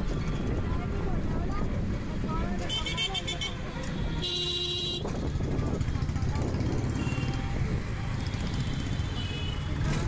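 Street traffic of motorcycles, scooters and cars running, with a brief high buzzing sound about three seconds in and a short vehicle horn blast just after four seconds.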